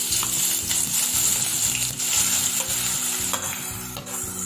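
Chopped green chilli and aromatics sizzling in hot oil in a pan, a loud steady sizzle that eases slightly toward the end.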